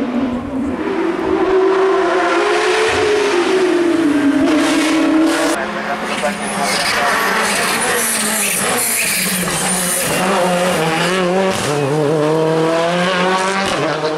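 Rally car engines running hard uphill, rising in pitch and dropping back at each gear change. The sound changes abruptly twice as one car's run gives way to another's.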